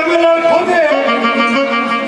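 A voice singing long held notes that step from one pitch to another, with music behind it.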